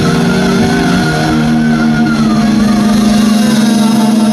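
Heavy metal band playing live: distorted electric guitars holding a loud sustained chord, with a wavering high guitar note above it and drums underneath that thin out about three seconds in.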